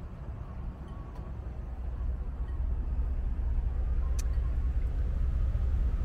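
A low, uneven rumble that grows louder about two seconds in, with a faint click about four seconds in.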